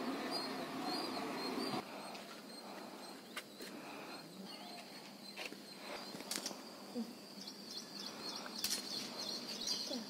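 Small birds chirping repeatedly, with a steady noise during the first two seconds and a few sharp clicks scattered through the rest.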